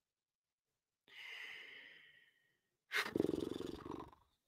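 A man breathing in with a soft hiss, then letting out a low, rasping, groan-like breath near the end.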